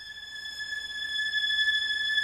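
Opening of a ghazal's instrumental intro: a single high note held steady, swelling gradually louder, with a faint hiss beneath it.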